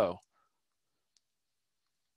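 Near silence after the last word of speech trails off, with a single faint click about a second in.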